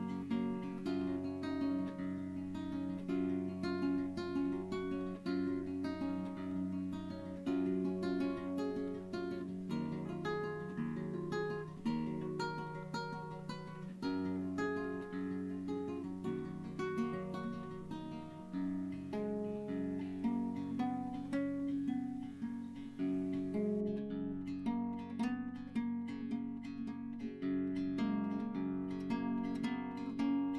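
Background music: acoustic guitar playing a steady run of plucked notes.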